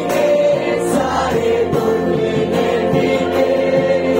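Voices singing together in a Christian worship song, holding long notes over instrumental accompaniment.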